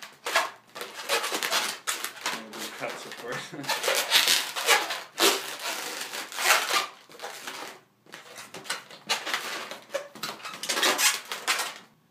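Inflated latex modelling balloons being twisted, squeezed and pushed through each other by hand, squeaking and rubbing in quick, irregular strokes; the sound breaks off briefly near eight seconds.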